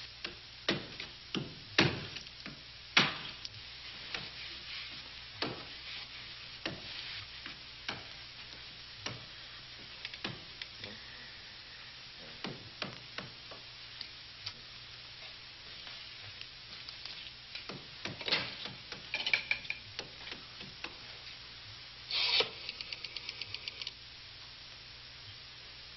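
Irregular knocks, taps and scraping of a tool being worked on wood, over steady film-soundtrack hiss. Near the end a quick, even run of clicks follows, like a telephone hook being jiggled.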